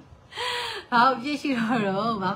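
A woman talking: a short breathy exclamation, then ordinary speech from about a second in.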